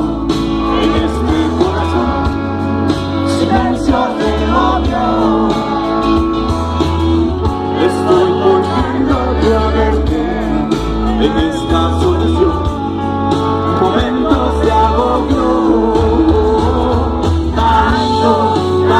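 Live rock band playing loud, with electric guitars, a heavy bass line and singing, heard as a phone recording from within a concert crowd.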